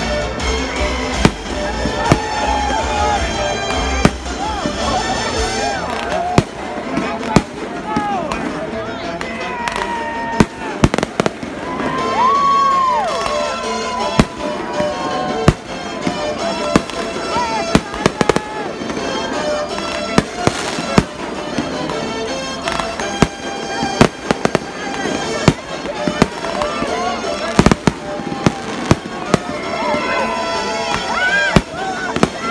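Aerial fireworks shells bursting with sharp bangs at irregular intervals, several close together around the middle and toward the end. Music plays continuously underneath.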